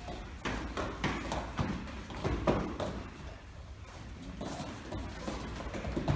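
Irregular thumps and slaps of taekwondo sparring: feet striking and stepping on foam floor mats and kicks landing on padded chest protectors. The loudest hit comes about two and a half seconds in.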